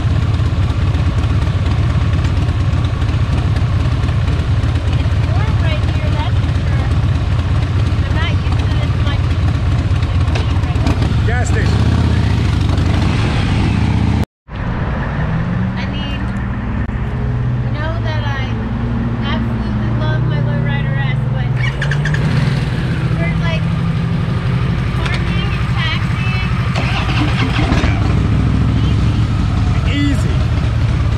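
Motorcycle engines idling amid road traffic, a loud, steady low rumble. After a brief dropout about halfway, a single motorcycle engine idles more quietly with a wavering low tone.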